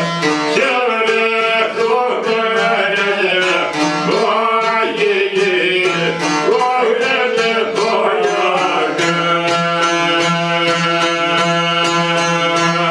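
Albanian folk music on a çifteli and a long-necked sharki lute, fast, evenly plucked strokes under a man's singing voice. The voice drops out about nine seconds in, leaving the strummed instruments with steady, droning notes.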